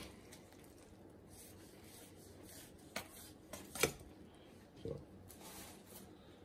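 Knife trimming fat off a raw brisket: faint scraping of the blade through fat, with a few light clicks and knocks in the second half.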